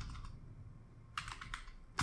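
Faint typing on a computer keyboard: a keystroke at the start, then a quick run of key clicks in the second half.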